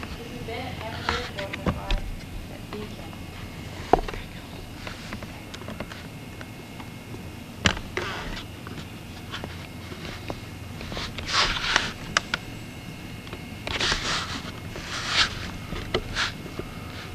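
Camcorder handling noise inside a cramped wooden capsule mockup: scattered sharp clicks and knocks, with rustling hisses near the end, over faint indistinct voices.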